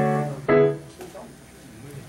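A held musical note, steady in pitch, fades out in the first half-second. A short second note follows just after half a second in, then the room goes quiet.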